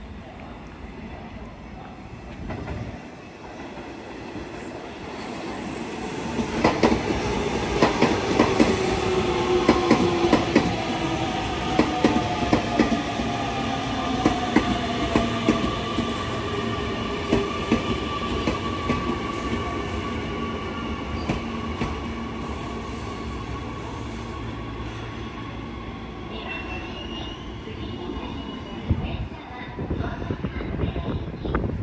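Electric train pulling into a station platform: the wheels click over rail joints as it comes in, and its motor whine falls in pitch as it brakes. A brief high squeal comes near the end.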